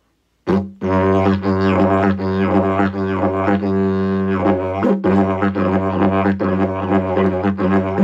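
Yidaki (Aboriginal didgeridoo) in F# played, starting about half a second in: a steady low drone with rhythmically shifting overtones and a short break about five seconds in.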